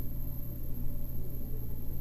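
Steady low hum with faint hiss and a thin high whine, and no distinct events: the background noise of a voice-over recording between spoken sentences.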